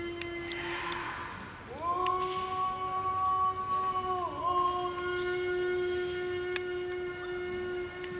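A sumo yobidashi singing the ring call (yobiage) of a wrestler's name. After an earlier held note ends about a second in, a new long drawn-out note slides up about two seconds in and is held steady. It dips briefly in pitch about four seconds in, then carries on almost to the end.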